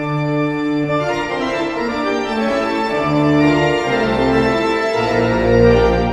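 Pipe organ playing sustained chords with a moving upper line. Deep pedal bass notes come in about four seconds in and swell toward the end.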